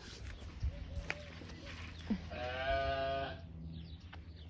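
A goat bleats once, a single call about a second long, a little past two seconds in. A few short knocks come before it.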